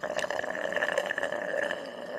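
Eating sound effect of chewing food: a dense run of small wet clicks and smacks over a steady noise.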